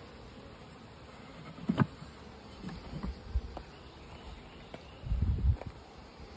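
Honeybees buzzing around an open top bar hive, with a few short knocks of wooden top bars being pushed into place, the loudest about two seconds in, and some low bumps near the end.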